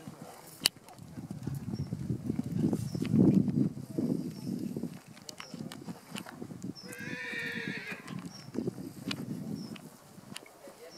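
Hoofbeats of a grey horse cantering over grass and sand, a rhythm of dull thuds that is loudest about three seconds in as it passes closest. A short high-pitched call sounds about seven seconds in.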